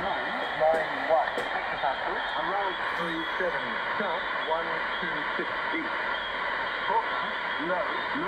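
A shortwave Australian marine weather broadcast on 12362 kHz, received in upper sideband on a Tecsun PL-680 and played through its speaker. A voice reads the broadcast, thin and narrow-band, over steady static hiss, with an adjacent station bleeding through alongside.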